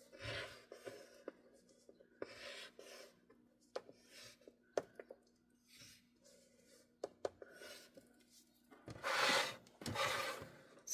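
Scoring stylus drawn along the grooves of a Scor-Pal scoring board, pressing score lines into cardstock: several short, faint scratching strokes with a few light clicks. Near the end comes a louder, longer sliding rub as the board and cardstock are shifted.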